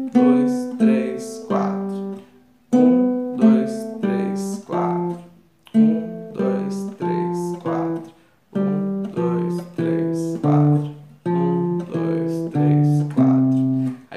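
Nylon-string classical guitar played slowly one note at a time, in five groups of four notes, each group stepping down the C major scale, with a short break between groups. This is a descending four-note sequence exercise starting from C, then B, A, G and F.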